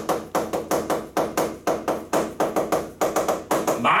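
Chalk tapping and clicking against a chalkboard as characters are written. The strokes come as a quick, uneven run of sharp taps, about four or five a second.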